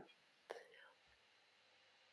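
Near silence, with one faint click about half a second in.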